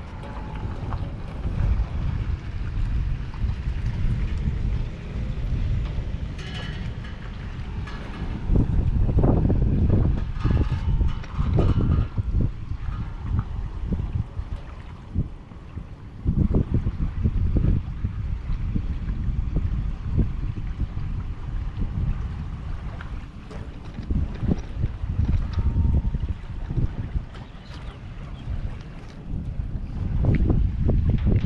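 Wind buffeting the microphone, a loud low rumble that comes and goes in uneven gusts.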